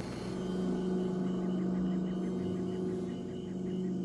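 Ambient background score: a sustained low droning tone held steadily, swelling slightly in the middle, with faint quick chirps repeating in the background.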